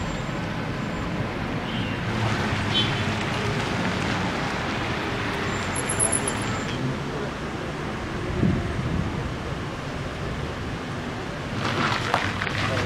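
Steady street traffic noise of passing and idling cars, with faint, indistinct voices at times.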